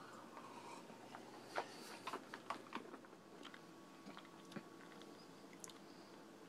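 Faint mouth sounds of a man sipping juice and working it around his mouth, with scattered small wet clicks and smacks.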